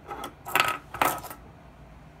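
Hard plastic toy parts clattering on a tabletop as they are pushed aside and set down: three quick clacks in the first second and a half.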